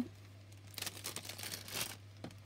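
Faint rustling and crinkling of hands handling small craft pieces and packaging on a cutting mat, mostly in the second half.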